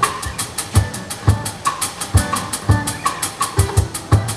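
Live band instrumental passage: a drum kit keeps a steady beat with even hi-hat strokes, about five a second, over kick drum and snare, under strummed acoustic guitar.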